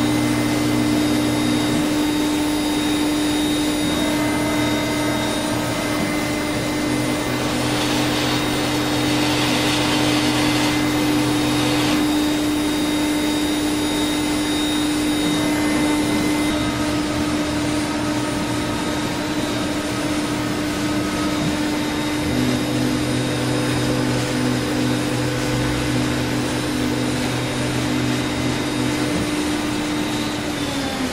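Laguna CNC router running, its spindle holding one steady tone over a loud, even rush of air as the head travels over the vacuum table. A brighter hiss rises for a few seconds about a third of the way in, and the spindle tone starts to fall away at the very end.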